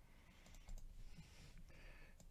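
Near silence: room tone with a few faint clicks from a computer mouse.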